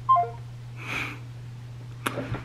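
A phone's short electronic call-ended tones, stepping down in pitch just after the start: the other end of the call has dropped. About a second in comes a short breath out through the nose, over a low steady hum.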